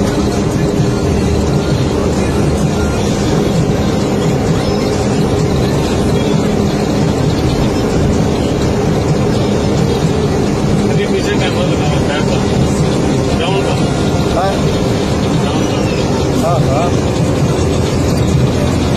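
Mobile crane's diesel engine running steadily at road speed, heard from inside the cab: a constant low drone mixed with road and cab noise.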